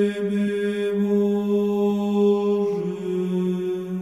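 Closing theme music in the style of a chant: low voices hold long sustained notes, shifting to a slightly lower chord a little under three seconds in.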